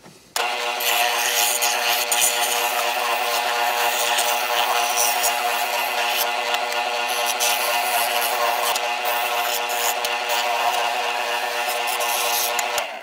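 Ridgid oscillating spindle sander running with its smallest spindle fitted, sanding the edges and contours of a 2x4 wood workpiece pressed against the drum. A steady motor hum starts abruptly about half a second in and holds level.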